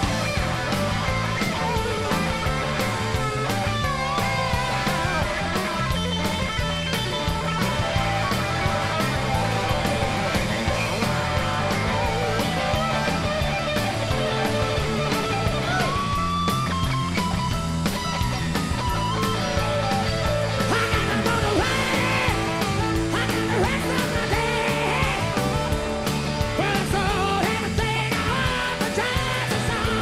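Live rock band music: electric guitar over bass and drums, with singing, at a steady loud level.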